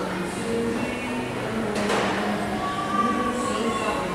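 Adair passenger lift's machinery humming steadily, with a sharp clunk about two seconds in and a thin high tone near the end, over background music.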